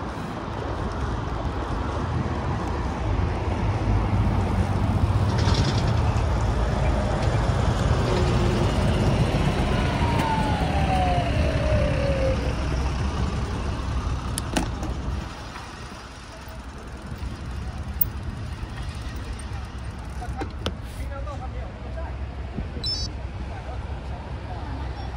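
Road traffic passing through a wide intersection: a steady rumble of vehicles, louder for the first fifteen seconds or so and lighter after, with a single falling whine about ten seconds in.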